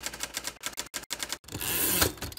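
Typewriter sound effect: a quick run of sharp keystrokes, followed about one and a half seconds in by a longer, steadier noise lasting about a second.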